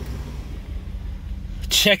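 Jeep Grand Cherokee WJ engine idling with a steady low rumble, heard from inside the cabin.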